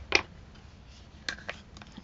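A few light clicks and ticks from a plastic glue bottle being handled over a cutting mat, the first and loudest just after the start.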